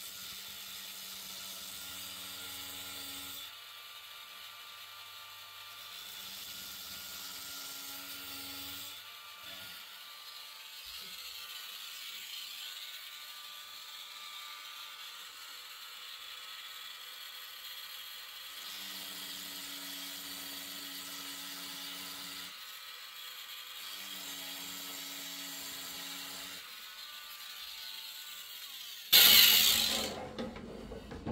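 Dremel rotary tool with a right-angle attachment and cutting disc, set to 15,000 rpm, cutting an electrical isolation gap through N-gauge track and its copper-clad circuit-board strip. It whines steadily in four bursts of about three seconds, with a softer grinding hiss between them. A loud knock comes just before the end.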